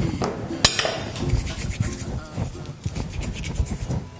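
Handling noises on a work table: light rubbing with scattered clicks and clinks of utensils, the loudest a single sharp click about two-thirds of a second in.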